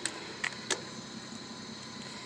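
Three short, sharp clicks within the first second, over a steady low background hum with a faint steady tone.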